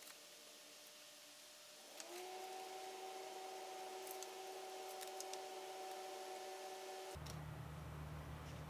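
Faint room tone with a steady two-tone electrical hum that comes in about two seconds in and gives way to a lower hum near the end, with a few light clicks.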